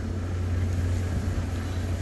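Steady low hum of a truck's diesel engine running at idle, with faint outdoor background noise.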